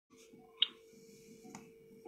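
A sharp click about half a second in and a fainter one near the end, over a faint steady hum.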